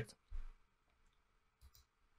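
Near silence broken by two faint computer mouse clicks, one just after the start and a sharper one near the end.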